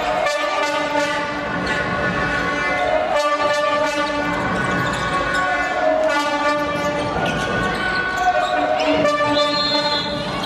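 A handball bouncing on a wooden sports-hall court during play, over long held pitched tones that change pitch every few seconds.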